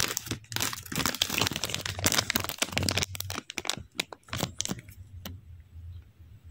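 Foil trading-card pack wrapper crinkling as it is handled, with dense crackling for about three seconds that thins to scattered crackles.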